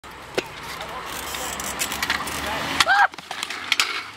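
Scooter and BMX wheels rolling on skatepark concrete, growing louder, then a collision about three seconds in: sharp impacts with a short cry, followed by the scooter and bike clattering onto the concrete.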